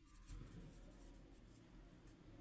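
Faint scratching of a pencil writing on paper.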